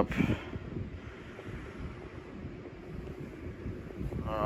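Low, steady rumbling noise of a phone's microphone being handled and brushed, with one short louder scuff just after the start.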